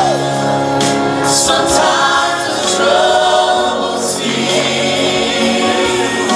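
Live gospel worship singing by a group of singers on microphones, amplified with band accompaniment, with a few sharp strikes in the accompaniment.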